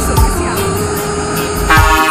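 A truck horn holds one steady note over reggae-remix music with a regular drum beat; near the end the music's chords come in louder.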